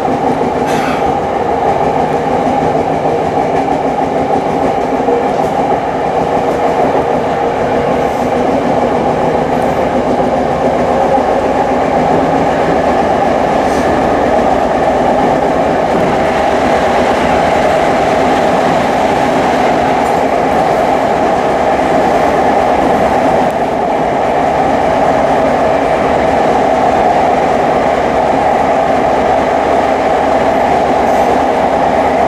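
Tokyo Metro 05 series electric train running between stations, heard from its cab: a steady rumble of wheels and running gear on the rails, with a few faint clicks.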